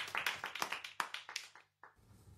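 Clapping from an audience, thinning out and fading, then cut off about one and a half seconds in.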